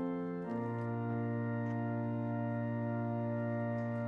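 Background organ music: slow, sustained chords held steady, moving to a new chord about half a second in.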